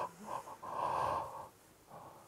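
A man's deliberate, drawn-out yawn: a few short breathy catches, then one long breathy exhale lasting under a second. It is a release of tension, which he presents as compacted energy being let out.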